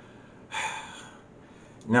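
A man draws one short, audible breath about half a second in, over faint room tone, before speaking again.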